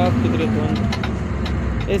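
Steady engine and road drone of a moving vehicle heard from inside its cabin, with a man's voice over it at the start and near the end.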